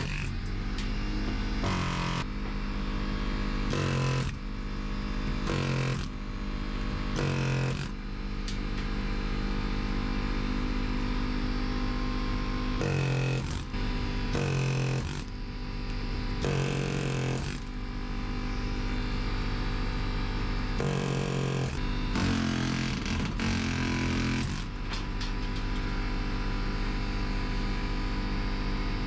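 Pneumatic air chisel hammering out steel rivets from a school bus's metal ceiling panels, in repeated bursts of about a second against a steady mechanical drone.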